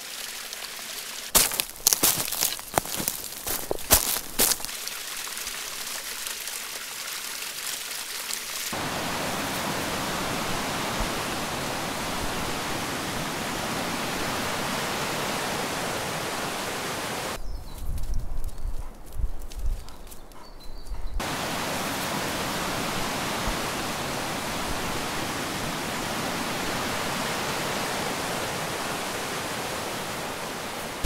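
River water rushing over rocks, a steady even rush. Sharp clicks come in the first few seconds, and a low rumble briefly replaces the rush a little past the middle.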